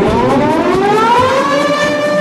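DJ siren sound effect: one smooth tone rising in pitch for about a second and a half, then holding steady.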